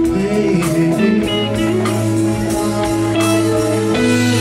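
Live band playing: a sustained melody line with some bent notes over a steady bass, with drum strikes at an even pulse.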